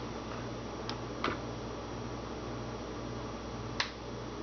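Three light plastic clicks, about a second in, just after, and near the end, as recycled plastic bottle containers are set in place on a counter, over a steady low background hum.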